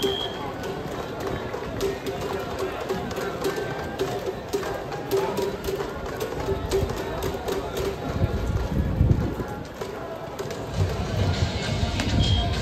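Ballpark ambience: music playing over crowd voices, with many short sharp ticks and a repeating tone through the first half.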